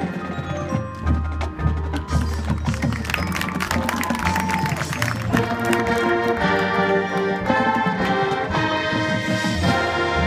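Marching band playing its field show: busy mallet percussion and drum strikes from the front ensemble, then the band holding sustained chords from about halfway.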